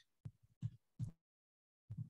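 Four faint, soft, low thumps picked up by a computer microphone, spaced irregularly about half a second to a second apart. They come while the slides are being clicked through, so they are most likely desk or mouse knocks.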